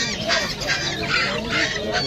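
A cage full of lovebirds chattering: many shrill squawks and chirps overlapping without a break.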